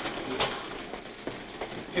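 Busy office background: scattered short clicks of typewriters and adding machines over a steady haze of room noise and faint, distant chatter.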